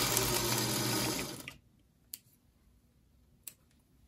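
Singer electric sewing machine running steadily as a seam is stitched, stopping about a second and a half in. A couple of faint clicks follow as the fabric is handled.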